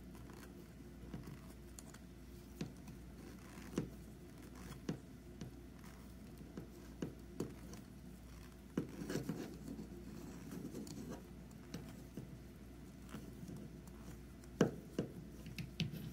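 Faint handling of a plastic peg loom as knitted chunky yarn is lifted off its pegs: scattered light clicks and taps of plastic, with soft rubbing and scraping of yarn. The rubbing is busiest about nine seconds in, and a few sharper clicks come near the end.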